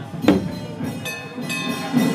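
Festival procession percussion: one sharp struck beat about a third of a second in, followed by steady metallic ringing tones.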